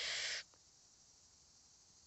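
A short breathy hiss close to the microphone that stops abruptly about half a second in, followed by silence.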